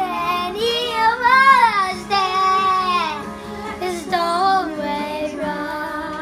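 A young girl singing loudly along with a recorded ballad, her voice sliding between notes and holding one long note about two seconds in, over the song's accompaniment.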